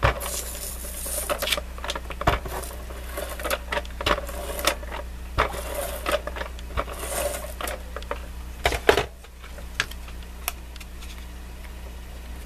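Paper being worked by hand on a craft mat: rustling, sliding and scraping strokes with scattered clicks and taps. They thin out about nine seconds in, with a few clicks after.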